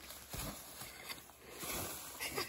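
Footsteps on the forest floor with leaves and undergrowth rustling as someone pushes through brush, a few irregular steps and brushing sounds.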